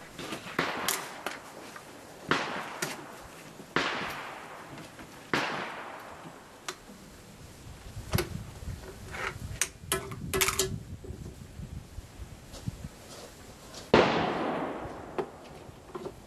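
Gunfire on a covered firing range: repeated rifle shots a second or a few seconds apart, some short and sharp, others with a long echoing tail, the loudest near the end. Between the shots come a few small clicks of a rifle being handled.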